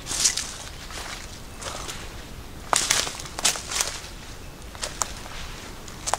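Footsteps of a walker on dry needle and leaf litter on a forest floor, an uneven series of short rustling steps with a quicker cluster in the middle.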